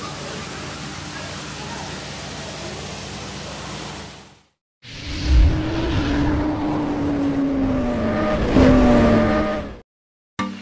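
A steady low hum with hiss for about four and a half seconds, then after a brief break an intro sound effect: a thump followed by a motorcycle engine revving, its pitch sliding slowly down before a sharp rev upward near the end.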